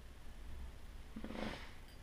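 Faint low handling rumble, with one short breathy nasal sound from a person about one and a half seconds in.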